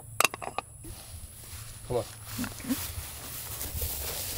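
A quick run of about five sharp clicks in the first second: orange clay pigeons knocking together as they are lifted off a stack.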